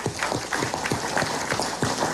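A small group of people applauding, with their separate hand claps audible.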